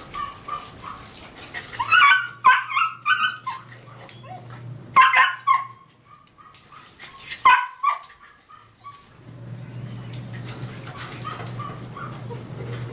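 Dog barking in short bursts: a quick run of several barks about two seconds in, then further bursts around five seconds and seven and a half seconds.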